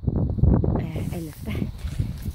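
Indistinct talking with wind buffeting the microphone.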